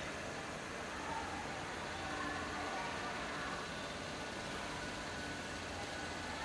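Steady background hiss of an empty hall's room tone, with a few faint, short, high-pitched sounds mixed in.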